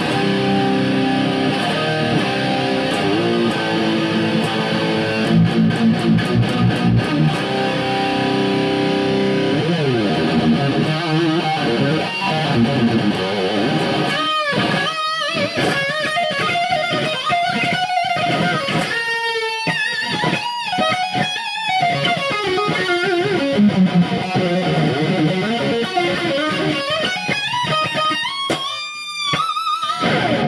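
Baker B1 electric guitar played through a Mesa Boogie Triple Crown head and Mini Rectifier cabinet on its high-gain channel. Held distorted chords and a stretch of quick rhythmic strokes come first, then a slide, then single-note lead lines with string bends, vibrato and fast runs.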